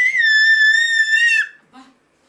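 A toddler's long, high-pitched squeal, held on one note, that breaks off about one and a half seconds in, followed by a brief faint vocal sound.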